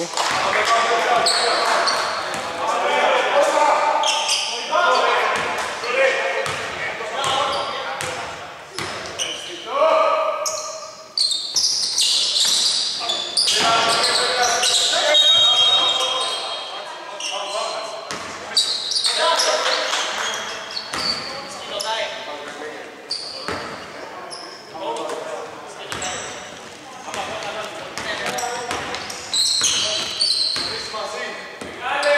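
Echoing voices in a large indoor hall during a basketball game, with a basketball bouncing on the hardwood court.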